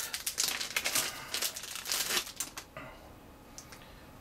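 Small clear plastic bag crinkling as it is pulled open by hand: a dense crackle that thins out to a few faint ticks over the last second.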